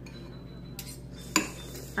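A metal fork clinks once against a dish about one and a half seconds in, with faint handling sounds before it.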